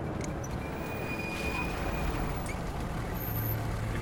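Heavy truck engines running with a steady rumble, with a thin high whine over the first half.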